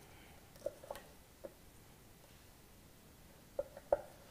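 A few light, sharp taps of a chef's knife on a plastic cutting board as a small red chili is cut, a couple about a second in and a quick cluster near the end.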